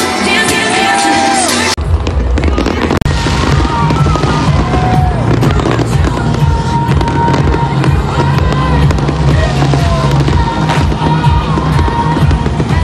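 Music for about the first two seconds, then an abrupt change to a dense, loud mix of fireworks going off and crowd noise, with music still underneath.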